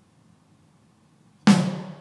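One hard stick hit on the snare of an electronic drum kit, about one and a half seconds in, with a short ringing decay. It is one of the five hard snare hits the Mimic Pro module needs to capture crosstalk for its crosstalk suppression.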